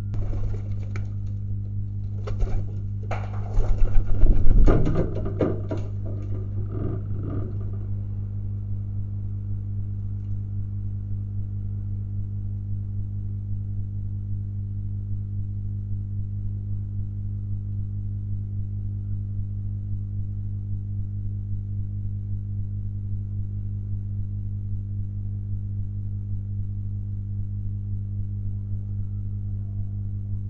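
Steady electrical mains hum, a low buzz with many overtones. Over the first eight seconds there is a flurry of short knocks and rustling scuffles, loudest about four to five seconds in.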